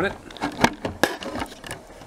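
Several sharp clicks and knocks of the opened line conditioner's metal case being handled, the loudest a little over half a second in.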